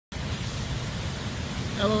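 Waterfall pouring into a river: a steady rushing noise, heavy in the low end.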